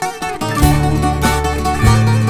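Instrumental opening of a Greek tango: bouzouki playing over acoustic guitar, with a low bass line coming in about half a second in.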